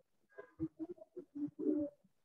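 A bird cooing faintly: a quick run of short, low notes that grows louder toward the end.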